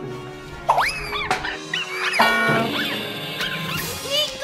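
Background music with sliding, whistle-like pitch glides over it, the largest rising and falling about a second in.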